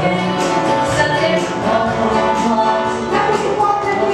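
Live gospel band music with voices singing along and a steady beat, keyboard and acoustic guitar in the band.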